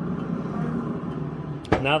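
Steady low hum of a running pellet grill, then a single metal clunk near the end as the grill's lid is shut.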